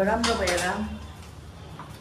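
A woman's voice saying 'I love', with a steady held pitch, followed by a quieter second of faint handling noise and a small click near the end.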